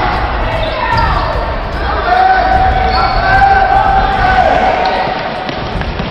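A basketball bouncing on a hardwood gym floor during a game, with spectators' voices throughout and one long drawn-out call in the middle.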